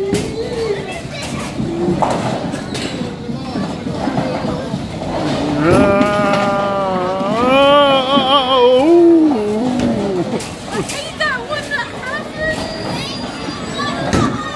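A person's voice making long, wavering non-word sounds, loudest from about six to ten seconds in.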